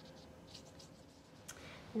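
Faint, soft swishes of a watercolor paintbrush stroking across paper, with a small sharp tap about one and a half seconds in.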